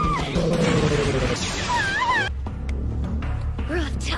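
Pitch-shifted anime soundtrack: a noisy sound effect and short high cries in the first two seconds, then a sudden switch to a low, steady, ominous drone of background music with a few brief gliding calls over it.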